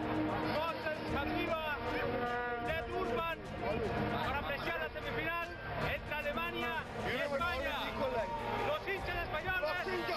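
A crowd of football fans, many voices talking and singing at once.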